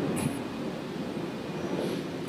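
A pause in a man's talk, filled by steady low background noise through the microphone, with a brief soft hiss, like a breath, near the start.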